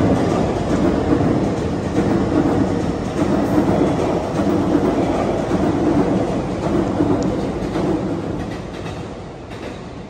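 Electric commuter train running past on the rails: a steady rumble with wheel-on-rail clatter, fading away over the last two seconds.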